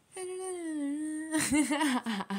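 A woman humming one held note that sinks slowly in pitch, then breaking into a laugh about a second and a half in.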